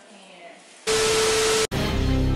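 A loud burst of static hiss with a steady mid-pitched tone under it, lasting under a second and cutting off abruptly: an editing transition sound effect. Background music starts right after it.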